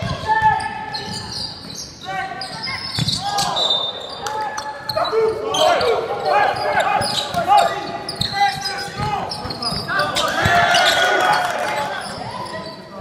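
A basketball being dribbled on a wooden hall floor, with players and spectators shouting. The calls get busier and louder in the second half as play runs up the court, echoing around the hall.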